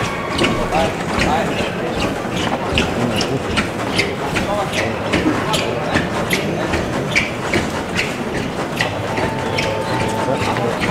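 Rhythmic shuffling steps of the costaleros' rope-soled alpargatas scraping on the pavement as they carry the paso forward, about two or three strokes a second, over a talking crowd.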